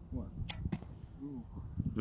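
Compound bow shot: a single sharp snap of the string on release about half a second in, followed a moment later by a second, softer knock.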